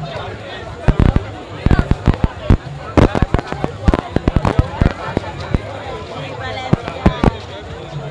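A string of firecrackers going off in a rapid, irregular run of loud sharp bangs for about four and a half seconds, with two more bangs about seven seconds in, over the chatter of a crowd.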